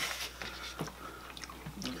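Quiet handling of food and paper plates at a table: a few soft clicks and rustles over low room noise.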